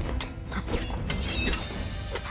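Fight sound effects in a martial-arts scene: a quick run of clattering hits and scrapes, with a burst of swishing noise about a second in.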